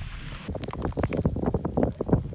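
Wind buffeting the camera microphone in uneven gusts, a low irregular rumble. The sound changes abruptly about half a second in, where the footage cuts.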